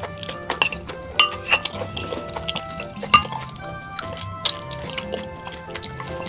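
Background music with eating sounds over it: chopsticks and a wooden spoon clinking against ceramic bowls, and chewing. The loudest is a sharp clink about three seconds in.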